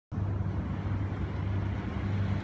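A steady low hum with no distinct events.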